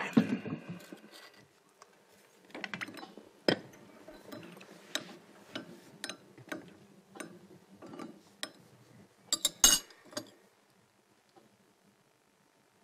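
China cups and saucers clinking and a chrome coffee pot being handled on a table as coffee is served: a scattered series of light clinks and taps, with the loudest clatter of cup on saucer near the end.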